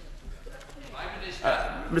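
Low murmur of MPs' voices in the House of Commons chamber, quiet at first and swelling about a second in.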